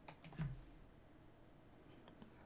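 Four or five quick, faint computer keyboard clicks in the first half-second.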